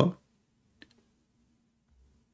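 The end of a man's spoken word, then near silence with a single faint click a little under a second in over a faint steady low hum.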